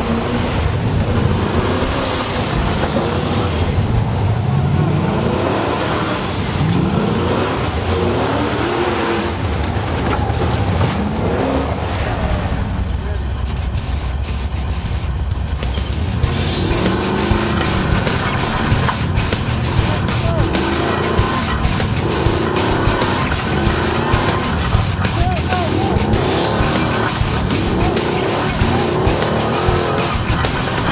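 Hill-climb rock buggy's engine revving hard in repeated surges that rise and fall in pitch as it climbs. About halfway through the sound turns to a dense run of rapid clicks and knocks over the engine, heard from inside the buggy's cage.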